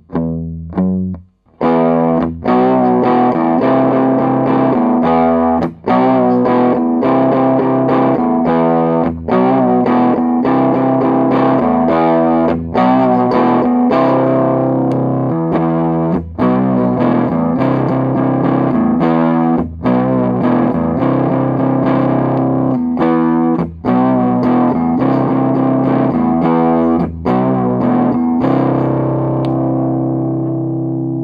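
A 1970s Yamaha SG-45 electric guitar with twin humbuckers played through a Fender Blues Junior tube amp with heavy distortion. A few quiet single notes come first, then from about two seconds in a driving distorted riff of chords and ringing notes, broken by brief stops every few seconds. The last chord rings out and fades.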